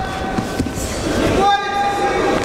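Voices echoing in a judo sports hall, with a steady pitched tone held twice: briefly at the start and again for about half a second near the end.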